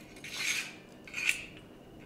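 A sword being handled: two short metallic scrapes about a second apart.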